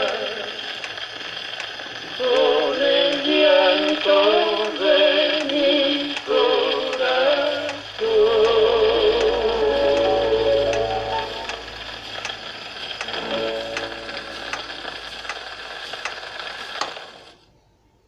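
A 78 rpm record of a vals criollo played on an acoustic gramophone: the closing bars of the band, with steady surface hiss and a faint click at each turn of the record. The music fades out and stops shortly before the end.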